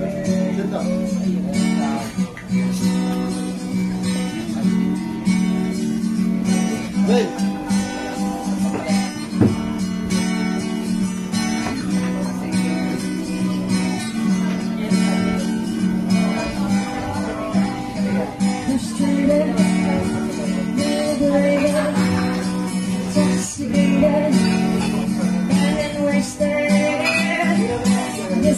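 Acoustic guitar strummed in a steady rhythm, the instrumental intro of a song played live before the vocals come in.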